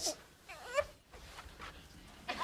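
A baby's short, high whimper, a single fussy sound that peaks just before the middle.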